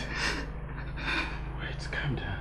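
A few quiet gasping breaths from a person in distress, over a low steady hum.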